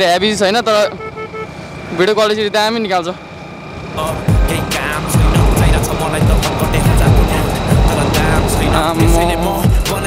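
A voice singing in short wavering phrases. From about four seconds in, heavy wind buffeting on the microphone of a moving motorcycle takes over, with a little singing again near the end.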